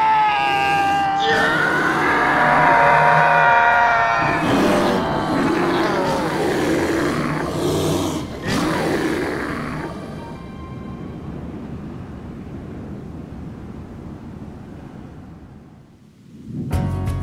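A man yelling in a long, wavering scream, giving way about four seconds in to a loud, rough roaring noise that fades over the next several seconds into a low hiss.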